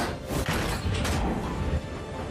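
Animated sound effect of a giant globe rolling along railway tracks: a low rumble with a few sharp knocks, over background music.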